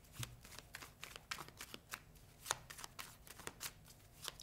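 Deck of tarot cards being shuffled by hand: a faint, irregular run of soft card clicks and flutters, with one sharper snap about halfway through.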